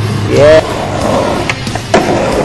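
Skateboard rolling, with two sharp clacks of the board, one about a second and a half in and one just before the end. A short pitched shout comes about half a second in and is the loudest sound.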